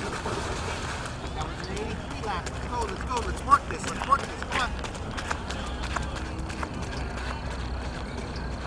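Track-meet ambience: spectators' voices and short shouts, with a run of quick, sharp footfalls from runners on the track. The loudest shouts come about three and a half to four seconds in.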